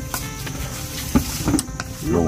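Wooden chopsticks stirring seasoned frog legs in a stainless steel bowl: a few short clicks and wet knocks, the sharpest a little past the middle.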